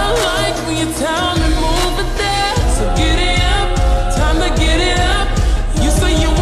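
Slowed-down pop song with reverb: a voice sings gliding lines over a held bass note, and a steady bass-heavy beat comes in about halfway through.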